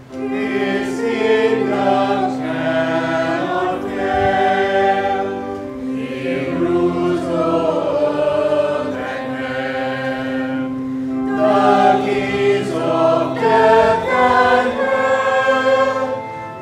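A church congregation singing a hymn together, over an accompaniment that holds long steady low notes.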